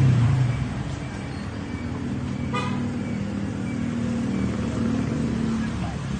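Street traffic: a vehicle running steadily nearby, with one short horn toot near the middle.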